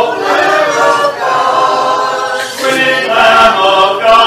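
Church congregation singing a hymn a cappella, many voices together in long sustained phrases, led by a song leader, picked up on a phone's microphone.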